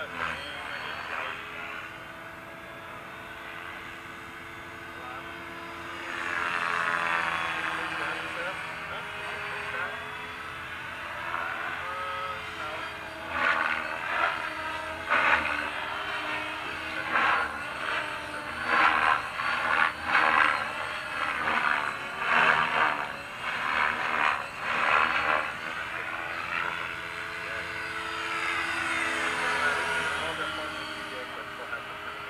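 Align T-Rex 550 electric RC helicopter flying, its motor and rotor giving a steady whine that rises and falls in pitch as it moves. Through the middle stretch comes a run of loud pulsing rotor-blade whooshes as it is thrown around in the air.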